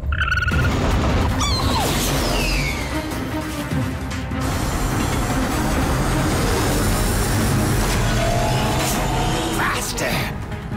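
Dramatic action score over a loud, continuous rushing rumble of sound effects, with a falling whoosh about two seconds in.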